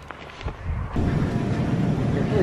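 A quiet stretch with a couple of faint knocks, then, about a second in, the sound cuts to the louder, steady background noise of a busy grocery store.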